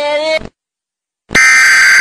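A loud, steady Emergency Alert System broadcast alert signal starts abruptly about a second and a half in. It comes after a short silence.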